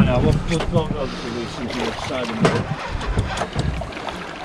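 Indistinct talking, in short broken phrases, over a low steady rumble.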